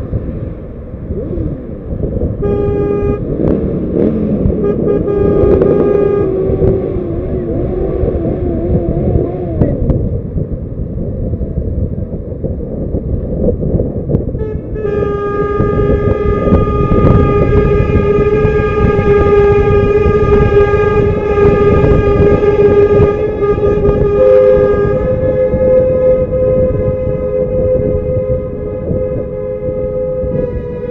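Vehicle horns held in long blasts over the rumble of a moving car and wind on its microphone. One horn sounds from about three to seven seconds in, with a wavering tone under it; a long steady horn blast follows from about fifteen to twenty-five seconds, and a second horn, slightly higher in pitch, takes over near the end.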